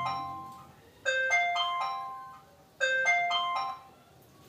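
Electronic order-alert jingle: a short rising phrase of chime notes repeated about every 1.75 s, three times, stopping near the end, typical of a delivery app's new-order notification on a phone or tablet.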